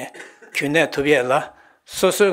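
Only speech: a man lecturing into a microphone.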